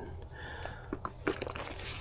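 Faint handling noise from a folding solar panel's cables and fabric: a few small clicks and some rustling.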